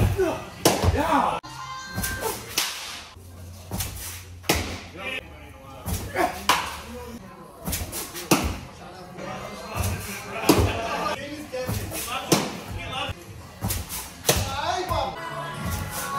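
Sharp smacks of baseballs in an indoor batting tunnel, one every second or two, over background music and voices.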